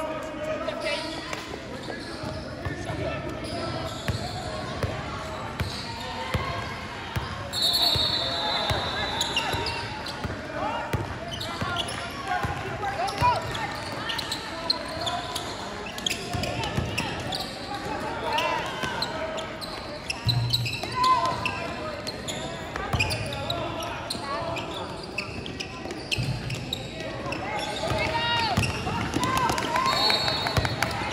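Basketball bouncing on a hard court amid indistinct voices of players and spectators, echoing in a large hall. A brief high squeak, typical of a sneaker on the court, comes about eight seconds in.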